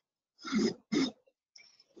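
A person clearing their throat twice, two short rasps in quick succession.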